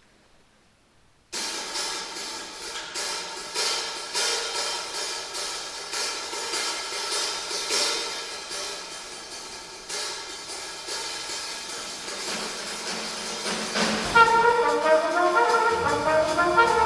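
Live small jazz band starting abruptly about a second in, with busy cymbal and drum strokes over the band. Near the end a loud brass horn melody comes in.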